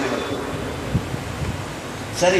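Steady hiss of background room noise picked up by the microphone, with a soft low thump about a second in.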